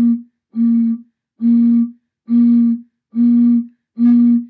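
A pop bottle sounding a low hooting tone as air is blown across its mouth, in short even puffs of about half a second, roughly one a second, all at the same pitch.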